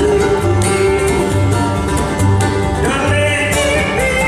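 Bluegrass band playing live on acoustic guitar, upright bass and banjo, the bass plucking a steady beat about once a second under the melody.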